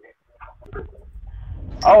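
Faint low car-cabin rumble over a video-call microphone, then near the end a voice calls out a drawn-out "Oh" that rises in pitch.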